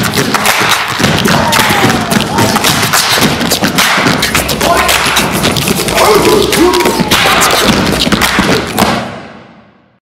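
Body-percussion ensemble stomping, stepping and clapping in a fast, dense rhythm, with shouted voices over the beats. The sound fades out near the end.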